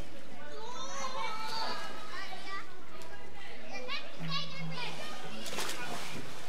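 Children's voices shouting and playing in a swimming pool, with a splash of water near the end.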